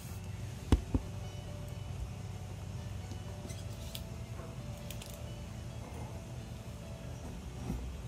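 Two sharp knocks close together about a second in, from objects being handled and set on a table, then a steady low hum with a few faint light clicks.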